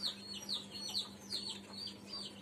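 Small birds or chicks chirping in the background: short, high-pitched chirps that fall in pitch, about three or four a second.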